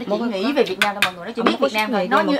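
A few sharp clinks of tableware, utensils against bowls and dishes at a meal, under a woman's talking voice.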